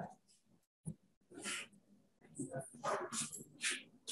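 Faint, broken-up voice sounds: brief murmurs and breaths with dead gaps between them, and a short click about a second in.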